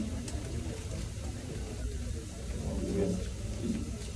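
Room tone: a steady low hum, with faint background voices about two and a half to three and a half seconds in.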